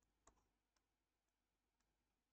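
Near silence with a few faint, short clicks, the clearest about a quarter second in.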